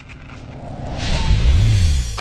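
Cinematic riser sound effect for a logo intro: a whooshing swell with a deep rumble underneath, growing steadily louder and peaking in the second half.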